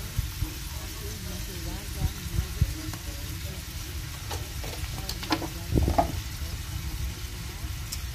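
Garlic, onion, chili and mushrooms sizzling steadily in a nonstick frying pan as they sauté, with a few light clicks about halfway through.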